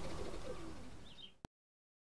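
Faint outdoor background with a few bird calls, including a low coo and a couple of high chirps. It fades out and cuts to complete silence about one and a half seconds in.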